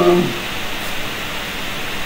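A man's "um" trailing off just after the start, then a pause filled only with a steady, even hiss of background noise.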